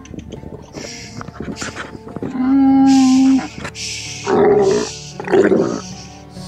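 A dromedary camel calling at close range: a long, steady, loud moan about two seconds in, then two shorter rough growls, with a breathy hiss around the calls. The camel is nervous and not yet used to its new rider.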